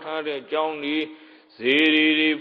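A monk's voice preaching in a sing-song, chant-like cadence: short phrases, a brief pause, then a loud drawn-out syllable starting about one and a half seconds in.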